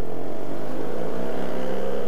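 Yamaha MT-07's 689 cc parallel-twin engine running on the move, its note rising gently as it gains revs, over a steady rush of riding noise.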